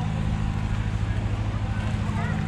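Steady low hum of an idling engine, its pitch unchanging.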